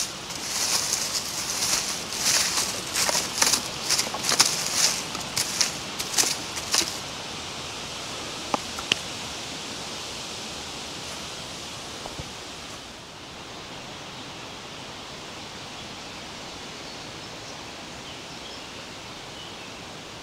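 Footsteps crunching and rustling through dry leaf litter and twigs as someone walks, dense for the first several seconds, then giving way to a steady outdoor hiss with a couple of faint clicks.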